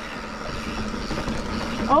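Mountain bike rolling along a sandy dirt trail: steady tyre noise over dirt and grit with wind rumble on the action camera's microphone. A rider's exclaimed 'oh' comes in at the end.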